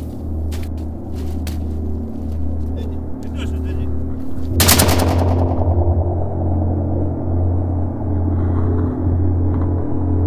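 Film action-scene sound mix: a sudden loud burst of gunfire about halfway through, ringing on, after which the high end drops away and the sound turns muffled. Under it a low drone pulses unevenly, with scattered sharp cracks before the burst.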